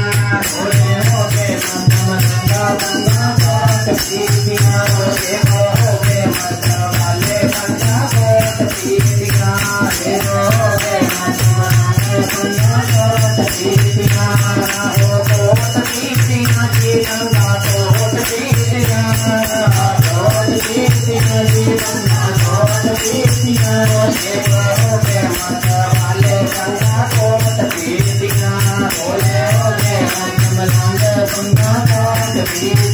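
Devotional Hindi/Punjabi bhajan sung into a microphone, with a dholak barrel drum keeping a steady beat a little over once a second.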